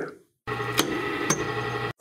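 Wood lathe running with a steady motor hum while a square-tipped carbide tool scrapes a walnut spindle, with two sharp knocks about half a second apart: a catch, the tool digging in hard enough to stop the piece spinning so the spur centre slips. The sound cuts off suddenly near the end.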